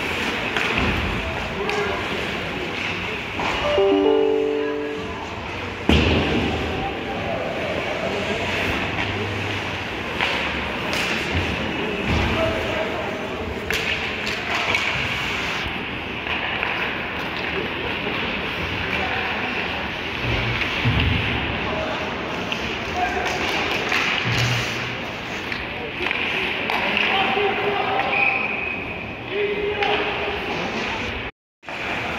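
Ice hockey game sounds in an arena: sticks and puck clacking, with a loud thud about six seconds in, over spectators' voices.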